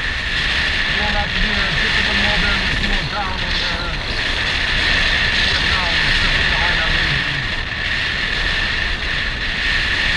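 Heavy wind buffeting on the microphone of a moving motor scooter, with the scooter's small engine running underneath, its pitch wavering up and down.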